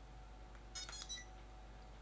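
Feiyu Tech VLOG Pocket phone gimbal's power-on tone: a brief, faint run of high electronic beeps about a second in, as the gimbal switches on and starts up.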